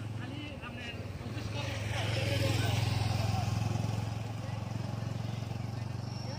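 A motor vehicle's engine hum passing close by, growing louder to its peak about halfway through and then easing off, with faint voices in the background.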